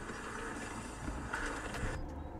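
Steady rushing noise of wind and riding on a dirt trail, from handlebar-view mountain bike footage playing back.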